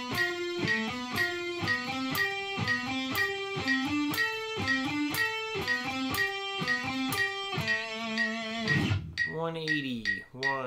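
Electric guitar playing a single-note exercise line, picked one note at a time over a metronome ticking about twice a second, closing on a held note near the end. A voice starts speaking just before it ends.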